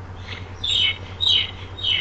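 A bird chirping: a few short calls, each falling in pitch, about half a second apart.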